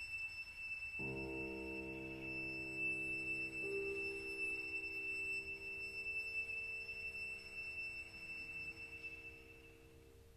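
Violin and piano: the violin holds one long, very high, quiet note while a soft low piano chord enters about a second in and rings on. Both fade away near the end, the closing sound of the piece.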